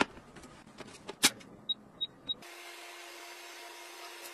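Plastic clicks and knocks from a small white rechargeable wall-mounted fan being fitted to the wall, then three short beeps, and the fan's motor starts running with a steady hum and whir about two and a half seconds in.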